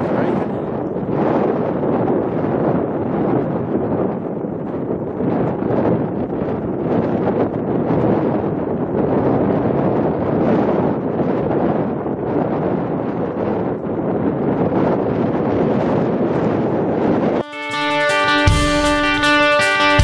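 Wind buffeting an outdoor camera microphone, a steady rushing noise that cuts off abruptly about seventeen seconds in, when guitar music starts.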